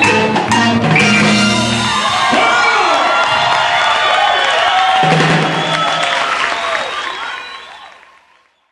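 Live salsa band playing, with electric bass notes heavy in the first two seconds and again about five seconds in, and voices over the music; the sound fades out near the end.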